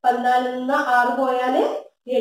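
A woman's voice speaking, talking through a subtraction sum.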